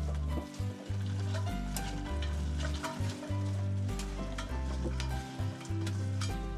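Black grapes being fed into a grape crusher and crushed, heard as many small irregular clicks, under background music with slow held bass notes.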